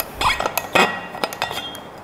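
Metal water bottle being handled and its cap unscrewed: a quick series of light metallic clinks and clicks, the loudest just under a second in.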